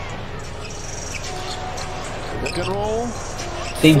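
Basketball broadcast arena sound: a steady crowd murmur with a ball bouncing on the court. A voice comes in faintly about two-thirds of the way through, and loud speech breaks in right at the end.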